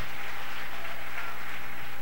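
Congregation applauding, a steady even clapping.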